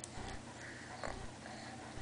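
Baby sucking and mouthing a frozen ice pop: wet mouth noises and breathing through the nose, with a short sharp click at the start and another about a second in.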